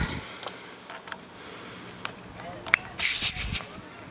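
A few light clicks, then a short, loud burst of air hissing about three seconds in as the tire inflator's air chuck is pressed onto the tire's valve stem.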